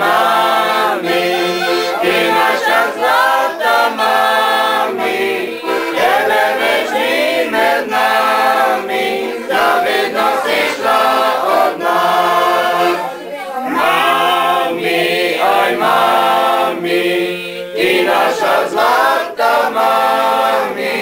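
A group of people singing a song together in chorus, phrase after phrase with short breaks between phrases, with an accordion playing along underneath.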